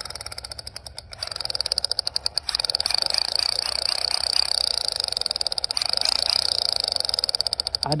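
Toy spark shotgun's friction mechanism rattling as the trigger is worked: a fast, even rattle of clicks with a high whine, the sign of the wheel striking the small sparks seen in the slot on its side. It grows louder about two and a half seconds in.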